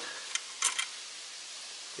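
A few faint, short clicks of small steel bolts knocking together as they are handled in a gloved hand, over a steady low hiss.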